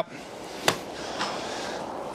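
A golf club swung in a practice swing over an artificial turf mat, with one sharp tap about two-thirds of a second in as the clubhead meets the mat, over a steady low background hiss.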